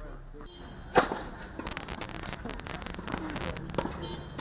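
A tennis ball struck by a racket, one sharp crack about a second in, followed by fainter knocks from the court and faint distant voices.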